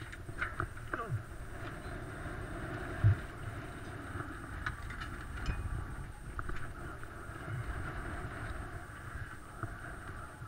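A mountain bike being pulled off a packed uplift bike rack and wheeled away: scattered metallic clicks and rattles of frames, brakes and handlebars knocking together, with one heavy thump about three seconds in.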